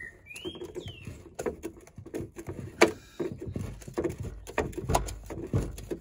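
Hand screwdriver loosening screws along the back of a plastic dashboard: a run of short, irregular clicks and knocks, one sharper knock near the middle. A bird chirps briefly in the first second.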